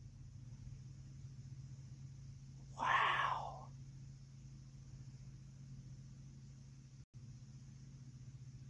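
Faint steady low hum, with one short breathy vocal sound from a woman about three seconds in.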